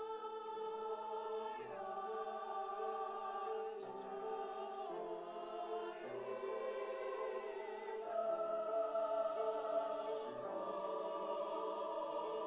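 Mixed choir of men's and women's voices singing in rehearsal: sustained chords whose notes shift every second or so, with a soft 's' consonant now and then.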